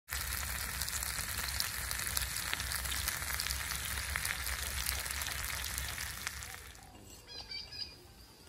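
Whole fish sizzling and crackling as it grills over hot embers. The sizzling dies away about seven seconds in, leaving faint bird chirps.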